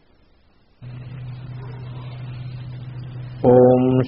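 A steady low drone starts about a second in. Near the end, a man's voice comes in much louder on a held chanted note, opening a Sanskrit invocation chant to the guru and Ganapati.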